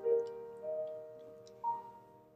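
Concert grand piano playing a slow, soft passage: a chord struck at the start, then a note about half a second in and a higher one near the end, each left to ring and fade. A few faint clicks sound over it.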